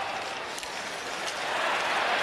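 Hockey arena crowd noise, a steady even din, with a faint sharp click about half a second in.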